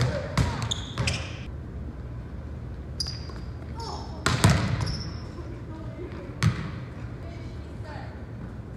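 A volleyball being struck back and forth, each hit a sharp slap of hands or forearms on the ball that rings on in the large gym's echo, about five hits, the loudest about four and a half seconds in.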